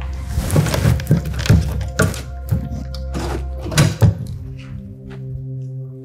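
Background music of soft held tones, with a quick run of about ten knocks and thuds over the first four seconds as things are handled and moved about; then only the music.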